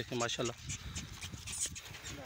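A herd of Rajanpuri goats moving about, with faint scattered clicks and shuffling. A man's voice is heard briefly at the start.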